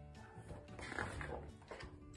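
Quiet background music with steady held notes, and a paper rustle of a picture-book page being turned about a second in.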